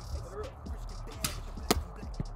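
Gas-engine football passing machine running with a low, steady hum. Late on come two sharp smacks about half a second apart as the football is fired from the spinning wheels and slaps into the catcher's gloved hands.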